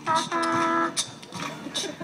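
A young child singing into a microphone: one long held note in the first second, then shorter wavering vocal sounds.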